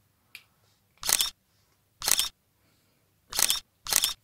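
Four short, loud rustling bursts about a second apart, from locs being handled and moved close to the microphone.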